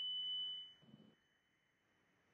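A struck tuning fork ringing on with one steady high tone that dies away, fading to faint about halfway through.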